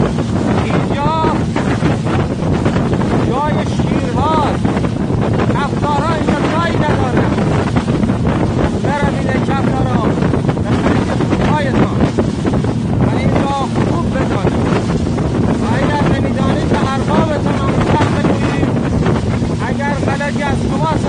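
Speedboat running at speed through choppy water, its engine and the hull's rush of spray mixed with heavy wind buffeting on the microphone.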